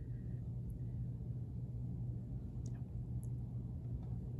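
Steady low background hum of the room, with a few faint small ticks as cotton fabric patches are handled on a wooden table.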